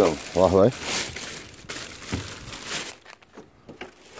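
Black plastic bin bag crinkling and rustling as a hand rummages through it inside a plastic wheelie bin, stopping about three seconds in.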